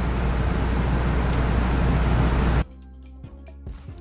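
A steady rushing noise with a low hum, cut off abruptly about two and a half seconds in; quieter background music with light percussive ticks follows.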